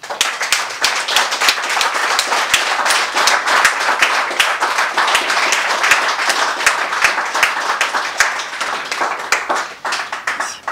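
Audience applauding: many people clapping in a dense, steady stream that starts abruptly and thins out near the end.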